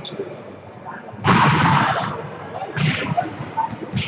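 A volleyball struck hard about a second in, with the echo of the gym hall trailing after it, and a second hit near three seconds. Players' voices can be heard underneath.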